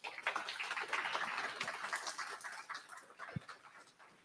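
Audience applause in a meeting room at the end of a talk, a dense spatter of hand claps that thins out and dies away about three seconds in.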